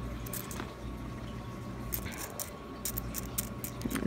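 Nickels being slid and spread across a mat by hand, with scattered light clicks as the coins tap against one another, over a low steady hum.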